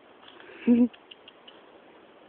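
A single short laugh from a person, one brief voiced 'ha' a little before the middle, followed by a few faint clicks.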